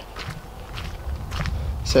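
Footsteps of a person walking over a steady low rumble, with a few faint knocks.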